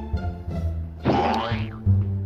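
Playful plucked-string background music, with a cartoon sound effect that slides in pitch about a second in.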